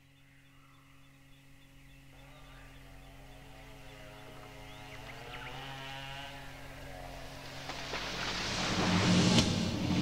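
Sound-effects intro to a thrash/death metal demo track, fading in: a steady low drone with faint bird chirps, joined about two seconds in by a wavering pitched sound. A noisy swell then builds steadily louder toward the end, leading into the band.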